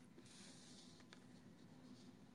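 Near silence: faint room tone with a low steady hum, a brief faint hiss early on and a couple of faint clicks about a second in.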